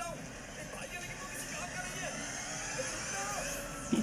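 Steady mechanical running noise of a lift's hoist machinery from a film soundtrack, with a faint rising high whine and faint dialogue underneath.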